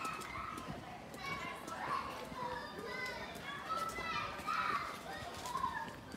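Children playing, their high voices calling out and chattering at a distance.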